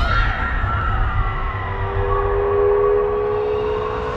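Trailer score and sound design: a steady low rumble under high tones that slide slowly downward, joined about a second and a half in by two steady tones held together like a tense drone.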